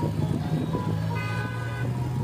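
A road vehicle's horn sounding once, a single held tone of under a second about a second in, over traffic noise.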